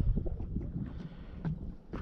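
Wind buffeting the microphone: an uneven low rumble, with a few faint light knocks.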